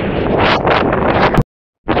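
Strong wind, around 30 mph, buffeting the camera microphone in uneven gusts. About three-quarters of the way through, the sound cuts off sharply with a click and drops out for under half a second before the wind noise returns.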